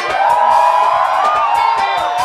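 Live mugithi band music: an electric guitar melody over a steady bass line and drum beat, with the crowd cheering.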